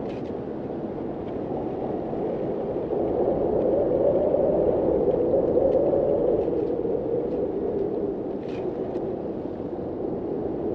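Snowmobile engine and track droning steadily while riding along a snow trail, heard from on board, growing louder through the middle as it speeds up, then easing off.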